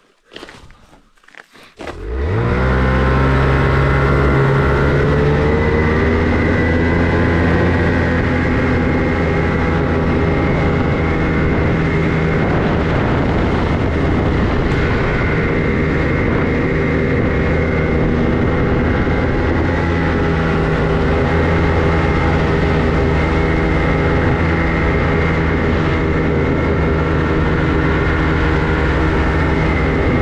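Ski-Doo Expedition Xtreme snowmobile running under way along a trail, its engine held at a steady speed with track noise. It comes in suddenly about two seconds in, pitch rising briefly as it gets going, after a few faint knocks.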